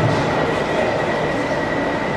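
Steady din of a crowded exhibition hall, an even wash of noise with a thin, steady high whine running through it.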